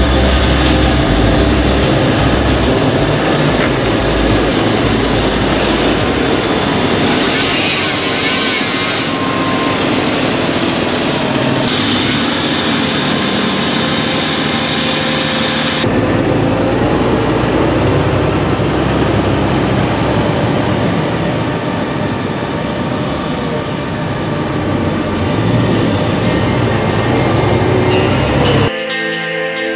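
Fendt 936 Vario tractor's six-cylinder diesel engine running steadily under load with a Veenhuis slurry tanker, along with the tanker's machinery noise. The sound changes abruptly twice, a little before and a little after the middle.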